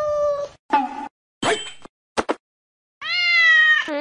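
Domestic cat meowing several times: a meow of about a second, two short meows and a longer, louder meow near the end, with brief silences between them.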